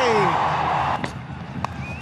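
Stadium crowd noise under a cricket broadcast, dropping in level about halfway through. Near the end comes a single sharp crack, a cricket bat striking the ball for a big hit.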